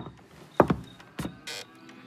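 Cartoon sound effects: four short, sharp hits about half a second apart, the second the loudest and the last a brief hiss-like burst, with faint thin tones between them.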